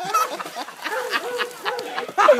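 Onlookers laughing in a string of short, high, honk-like cries, about three or four a second.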